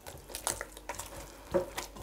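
Hand kneading soft, oily yeast dough in a plastic bowl: irregular short wet sounds as the dough is squeezed and pressed, with the vegetable oil still being worked into it.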